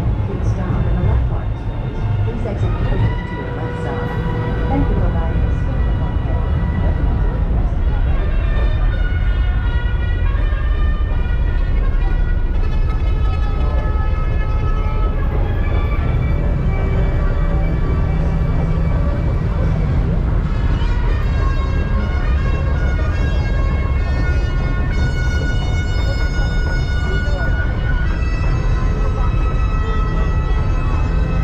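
Steady low rumble of a shoot-the-chutes boat being carried up the lift ramp. From about eight seconds in, the ride's themed soundtrack plays over it in long held notes.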